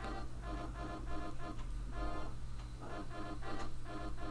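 A short electronic tune played back from the LMMS music program: quickly repeated chord notes over a steady low tone underneath.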